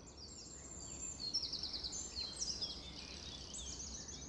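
Songbirds singing, with several high, quick trilling phrases overlapping one another.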